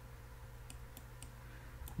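A handful of light computer-mouse clicks, spaced out through the second half, over a steady low hum.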